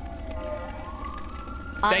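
A siren wailing, its pitch dipping slightly and then rising slowly to hold a higher note.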